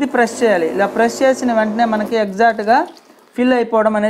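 Speech: a person talking, with a brief pause about three seconds in.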